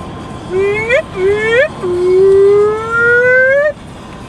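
A person in the car imitating a police siren with their voice: two short rising whoops, then one long, slowly rising wail that cuts off just before the end.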